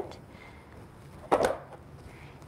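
Quiet room tone broken by one brief rustle about one and a half seconds in, as quilting cotton is handled on a cutting mat.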